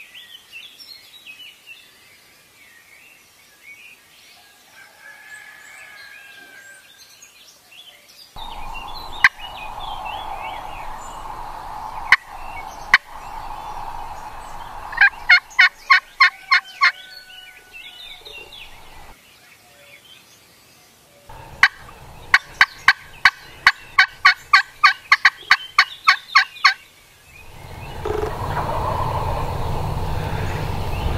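Turkey yelping: a short run of sharp, evenly spaced yelps, then a longer run of about sixteen at roughly four a second. A few sharp knocks come before them, and birdsong chirps faintly at the start.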